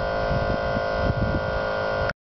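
Diesel engine of a Superior Broom construction sweeper running steadily: a constant hum with a couple of steady higher tones over an uneven low rumble.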